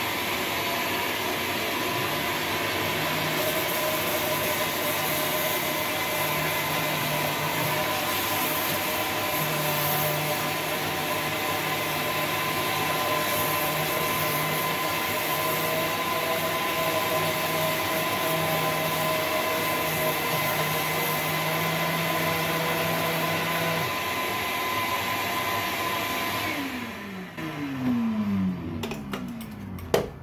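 DeWalt 20-volt cordless 5-inch random orbital sander running steadily against a rusty cast iron drain pipe, grinding at thick paint and rust, with a vacuum running alongside to pick up the dust. Near the end the motor noise drops and winds down with a falling pitch.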